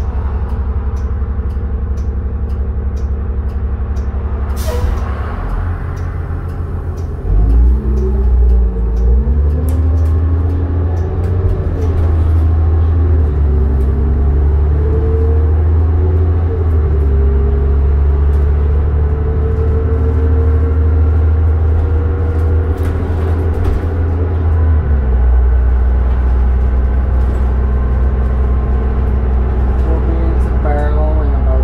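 Diesel engine of a 2007 New Flyer D40LF transit bus, heard from inside the cabin, idling with a steady ticking and a short hiss of air about five seconds in. It then revs up as the bus pulls away, its pitch rising and dropping through the gear changes, and eases off near the end.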